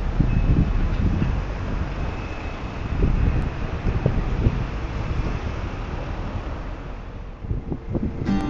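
Outdoor street ambience dominated by wind buffeting the microphone: an uneven low rumble with a steady hiss above it.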